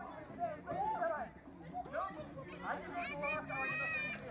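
A group of children's voices chattering and shouting over one another, with one long high-pitched call held near the end.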